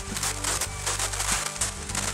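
Rain falling on the roof, heard as a dense, irregular crackle of small ticks.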